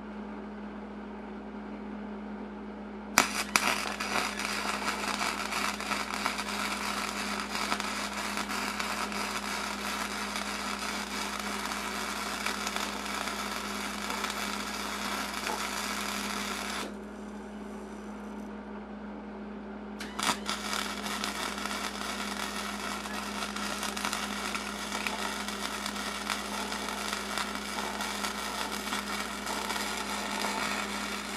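Electric arc welding on steel, the arc crackling and sizzling in two long runs: the first strikes about three seconds in and stops around seventeen seconds, the second strikes about twenty seconds in and runs on. A steady low hum sits underneath throughout.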